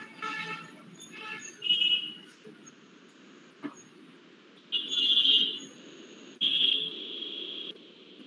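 A series of high-pitched toots, three of them held for about a second each, over a low background noise.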